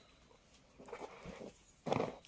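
Silk suit fabric being handled and unfolded: soft rustles about a second in, then a louder brief flap near the end as the cloth is swung open.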